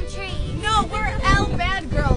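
Excited women's voices calling out in swooping, rising and falling tones, over the rumble and wind noise of a moving open vehicle.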